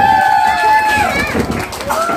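A voice holding one long high sung note that slides down and breaks off about a second in, followed by a jumble of voices and short knocks.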